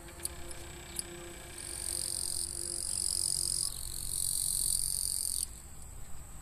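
Insects shrilling in a grassy field: a high, steady buzz that comes in about two seconds in, swells and cuts off abruptly near the end.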